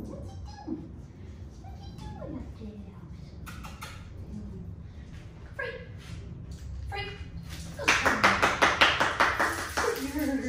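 A quick, even run of sharp slapping strokes, about five a second, lasting about two seconds near the end, louder than anything else here; short high gliding voice sounds come and go before it.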